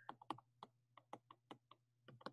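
Faint, irregular tapping clicks of a stylus on a tablet screen while numbers are handwritten, about a dozen in two seconds.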